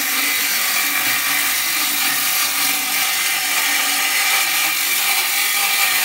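Ridgid circular saw ripping a narrow strip off a wooden board, running steadily under load.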